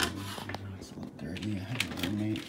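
A man's low voice making drawn-out hesitation sounds rather than words, with a sharp click at the start and a lighter one near the end from plastic food-dehydrator trays being handled.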